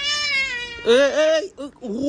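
A toddler's high-pitched squeal, one held call lasting just under a second, followed by an adult's excited exclamations.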